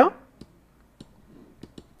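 A few faint, sharp clicks of a computer mouse, spaced irregularly.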